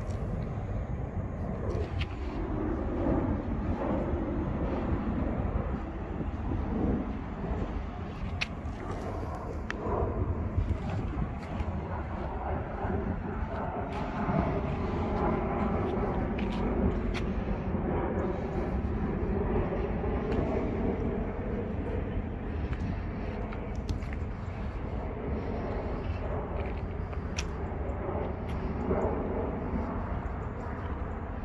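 Outdoor background of a steady low rumble with a wavering engine-like hum from vehicles or machinery, and scattered faint clicks.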